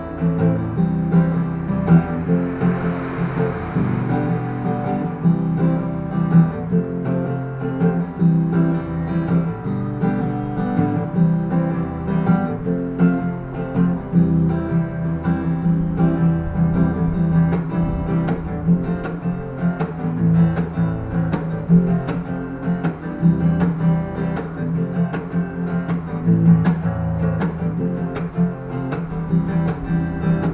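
Steel-string acoustic guitar played in a repeating pattern of a bass note followed by two strummed hits, moving through an Am–C–F–G chord progression.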